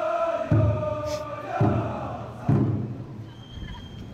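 Chanting voices holding one long drawn-out call, then three heavy beats of the Kokkodesho float's large taiko drum, about a second apart.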